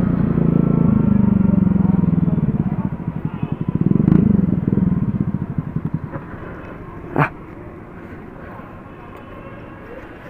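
A motor scooter engine running steadily as it rides at low speed through traffic, then wavering and dying away as the scooter slows and pulls up, leaving quieter street background. A single brief sharp sound comes about seven seconds in.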